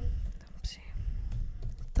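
Typing on a computer keyboard: an irregular run of quick key taps as a misspelt word is deleted and retyped.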